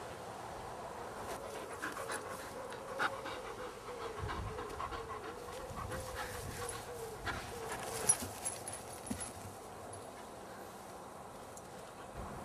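A lurcher panting close by, with a few sharp clicks and knocks along the way.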